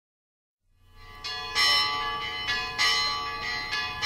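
Bells ringing, fading in after about a second of silence: about five strikes, each left ringing into the next.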